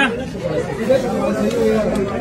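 Background chatter of several people's voices talking over one another.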